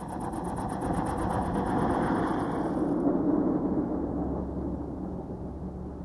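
A Volkswagen Golf driving past on a loose gravel road: tyre and engine noise builds for two or three seconds, then fades away.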